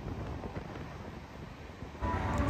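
Passenger train running through a rock tunnel, heard from an open door: a steady rush of train noise and air against the microphone, with faint irregular ticks from the running gear.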